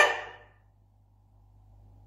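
A woman's drawn-out spoken "hein" with rising pitch, fading out about half a second in. Then a pause with only faint room tone and a steady low hum.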